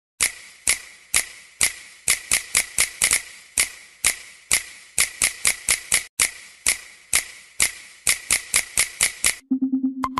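A rhythmic percussion pattern of sharp, bright clicks, some spaced about half a second apart and some in quick runs of four or five. Near the end a low buzzing tone comes in.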